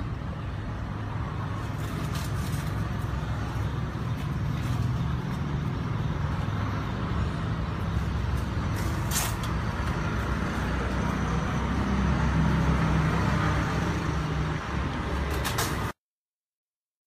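A steady low engine rumble, as of a motor vehicle running nearby, with a faint even background hiss and a couple of brief clicks, about nine seconds in and near the end.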